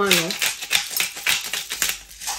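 Hand spice grinder twisted over a bowl of chicken wings: a fast run of sharp, dry clicks and crunches as the grinder turns, starting just after half a second in and stopping near the end.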